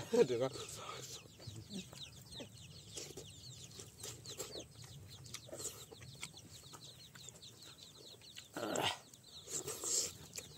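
Birds chirping in the background, a steady run of quick, high, short chirps, likely from chickens, over soft chewing. A brief louder noisy sound comes a little before the end.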